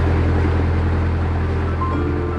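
Narrowboat engine running steadily while the boat is under way, a low, even hum.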